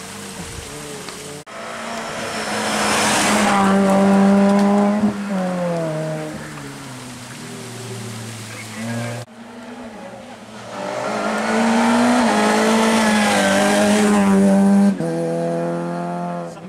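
Rally cars driven hard on a tarmac special stage, their engines revving up and down and stepping through the gears as they approach. The sound stops suddenly twice, and another car starts up right after each stop.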